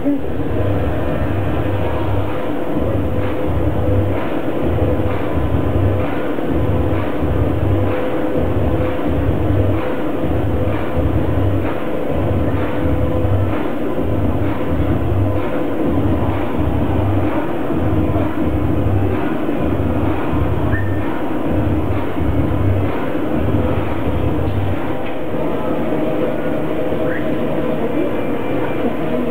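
Attraction soundtrack of a train journey: a regular low rumbling pulse about one and a half times a second under a steady hum, stopping a few seconds before the end.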